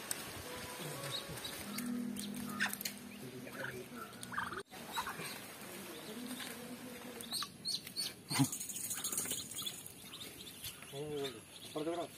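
Domestic ducklings peeping, a scatter of short high cheeps while they are being gathered up.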